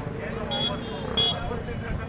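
A man speaking into a handheld microphone over road traffic, with two short high-pitched toots, about half a second and a little over a second in.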